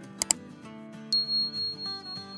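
Background music with a quick double click sound effect a few tenths of a second in, then a high bell chime starting about a second in that rings on: the click-and-bell of a YouTube subscribe-button animation.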